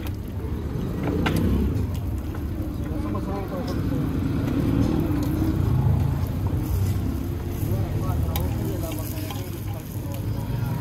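A motor vehicle engine running close by, a steady low rumble that swells and eases, with voices over it.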